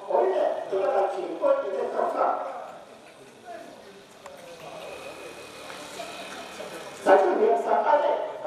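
A voice reciting a prayer. It pauses for about four seconds from three seconds in and starts again loudly near the end.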